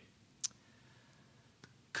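Quiet room tone with one short, sharp click about half a second in, and a much fainter click near the end.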